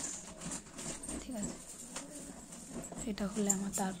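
A person's voice talking in short phrases with pauses.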